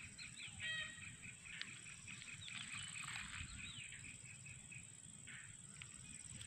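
Faint birds chirping, short rising and falling calls scattered through, over a steady high-pitched insect drone.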